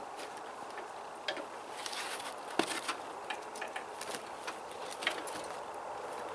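Faint scattered clicks, light knocks and rustling as a person climbs back into a homemade metal exoskeleton suit and fastens its straps, with one sharper click about halfway through.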